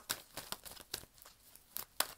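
Faint handling noise: a run of irregular small clicks and crinkles.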